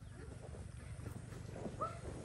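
Faint steady low hum of an engine-driven water pump used to drain a pond, with one short high squeak near the end.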